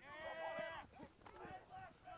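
A faint, drawn-out high shout from a distant voice lasting just under a second, followed by shorter, fainter calls.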